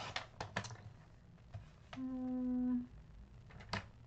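Light clicks and taps of a sliding-blade paper trimmer as paper is set on it and cut into a strip, several near the start and one more near the end. About two seconds in, a short hummed note.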